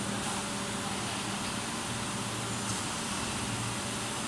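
Steady mechanical hum and hiss of running plastic injection moulding machinery, with a few constant low tones and no distinct strokes or clanks.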